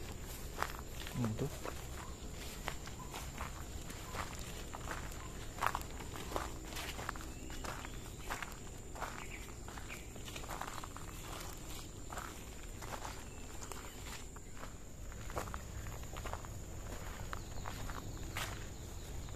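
Footsteps through long grass, leaf litter and dry fallen oil palm fronds, with the rustle of brushed vegetation, irregular at about one or two steps a second.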